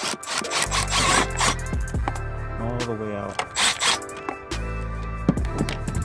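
Background music with sung vocals, over which a ratchet wrench on a 12 mm socket and extension works the battery hold-down bracket bolt loose in two short rasping bursts, about a second in and again near four seconds in.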